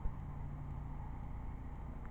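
Faint, steady low hum of engines running, with no distinct events.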